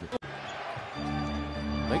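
NBA broadcast arena sound: a basketball being dribbled on the hardwood court while arena music holds a steady chord. The sound drops out for an instant about a fifth of a second in.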